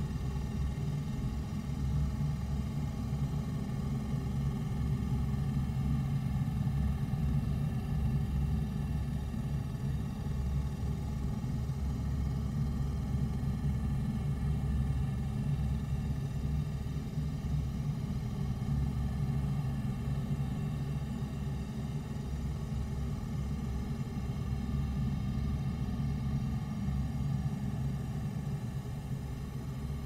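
A low, steady rumbling drone with faint held higher tones above it.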